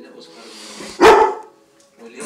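A dog barks once, sharply and loudly, about a second in.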